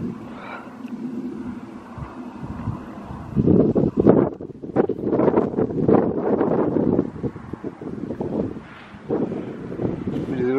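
Wind buffeting the microphone in uneven gusts, strongest from about three and a half to seven seconds in and briefly again near the end.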